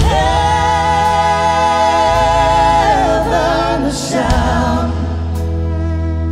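Three singers, two women and a man, in close vocal harmony on a slow country ballad with a live band. The voices hold one long chord for nearly three seconds, then move through wavering, gliding notes.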